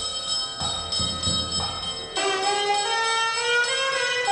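Temple ritual music: a bell ringing steadily, with low drum beats in the first half, then a gliding melody line coming in about two seconds in.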